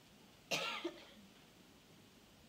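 A person coughs once, a short, sharp cough followed right after by a smaller second burst, about half a second in.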